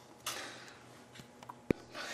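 Hands handling a laptop's plastic chassis: a soft rustle, a few faint ticks, then one sharp click near the end.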